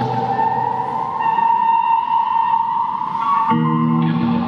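Experimental electric guitar music: a sustained tone slowly rises in pitch over a thin wash of higher tones, and a low, steady chord comes in about three and a half seconds in.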